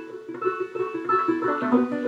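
Five-string-style open-back banjo, strung upside-down for a left-handed player, picked in a short instrumental run of plucked notes and chords that change several times within two seconds.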